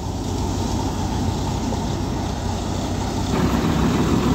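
Diesel tractor engine running steadily with its mounted mustard thresher (hadamba) working. The sound grows louder near the end.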